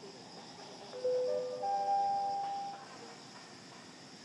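A chime: three or so held notes enter one after another, each higher than the last, starting about a second in and dying away near the three-second mark. A steady high insect hum runs underneath.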